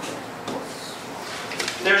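A pause in speech with low room noise and a faint, brief scuffing noise about half a second in, then a man's voice starting near the end.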